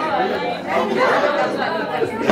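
Chatter of a group of men and women talking over one another in a room.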